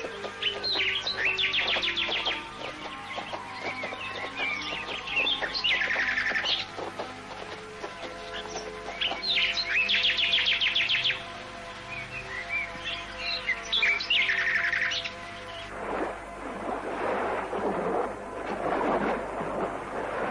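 A songbird singing in repeated trilled phrases, about every four seconds, over soft sustained background music. About four seconds before the end the birds and music give way to the rushing wash of surf.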